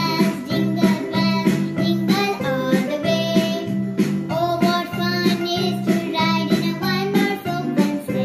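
A girl singing a song over a steady instrumental accompaniment with plucked strings.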